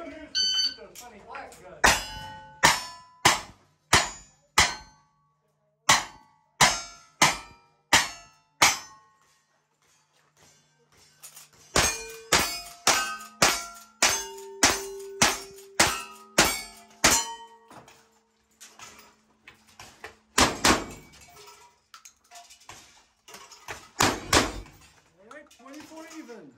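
Cowboy action shooting stage: two strings of five single-action revolver shots, each about two-thirds of a second apart, then a quicker run of about ten lever-action rifle shots, then two double-barrel shotgun blasts a few seconds apart. Steel targets ring on after the hits, all of them clean hits.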